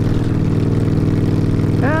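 Harley-Davidson cruiser motorcycle engine running steadily, with an even, unbroken throb.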